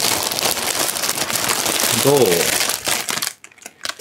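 Clear plastic packaging bag crinkling as a costume is pulled out of it. The sound stops abruptly a little after three seconds in.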